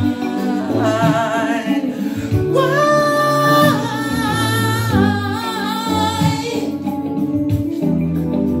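A man singing a long high ad-lib line with wide vibrato over a karaoke backing track, holding one steady high note for about a second near the middle before the voice drops out near the end.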